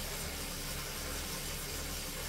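Wahoo KICKR direct-drive smart trainer running under steady pedalling: a low, even whir with a faint hiss over it.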